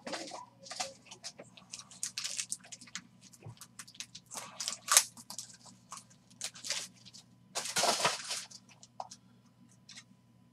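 Hard plastic card holders and sleeves being handled: irregular crinkles, rustles and clicks. The sharpest click comes about five seconds in, and a longer crinkle comes near eight seconds.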